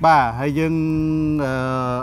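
A man's voice: a short syllable, then one long, steady, held vowel in a chant-like tone.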